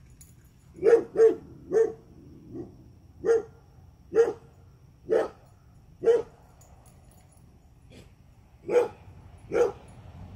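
A dog barking repeatedly: about ten short single barks roughly a second apart, with a pause of a couple of seconds before the last two.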